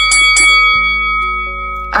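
A bright bell-like chime sound effect struck once, ringing on and slowly fading over about two seconds, over a soft background music track.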